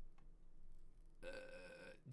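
Near silence, then a man's burp, steady in pitch and a little under a second long, near the end.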